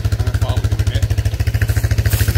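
Quad bike engine running steadily: a rapid, even low throb.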